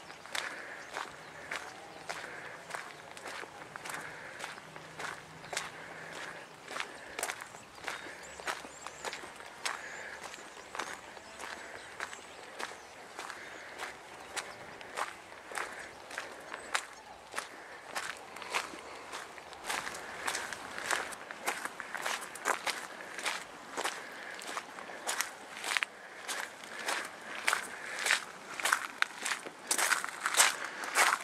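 Footsteps crunching on the gravel of a former railway bed at a steady walking pace, about two steps a second. The crunches get louder near the end, where the ground turns to loose ballast stones.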